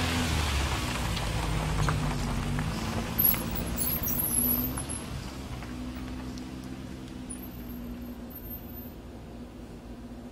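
Car engine running as an old estate car drives close past and away, fading steadily, with a short knock about three seconds in.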